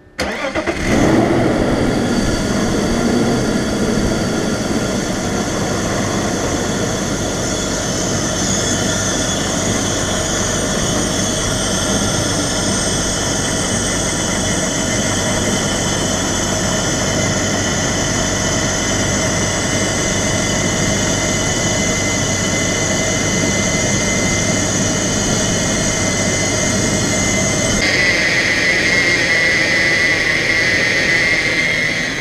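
BMW straight-six engine starting at the very beginning and then idling steadily, with its newly fitted power steering pump running. Near the end a steady higher-pitched whine joins the idle.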